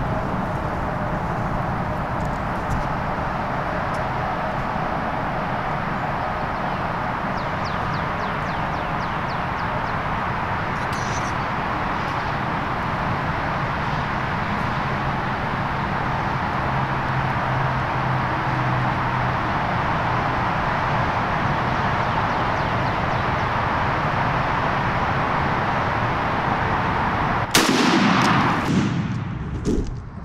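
A steady rushing background noise, then near the end a single loud shotgun blast with a short echo after it: the shot at the tom turkey.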